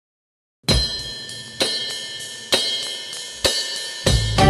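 Song intro on drum kit: after a moment of silence, four cymbal crashes struck together with the kick drum, evenly spaced just under a second apart, each left ringing out.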